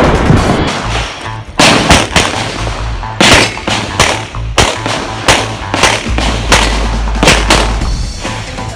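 A string of pistol shots, about a dozen fired at an uneven pace of one to two a second, as a shooter works through a practical shooting stage, with background music under them.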